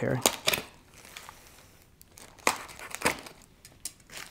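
Plastic wrapping on a package crinkling and tearing as it is slit open with a utility knife, in a few short scratchy bursts.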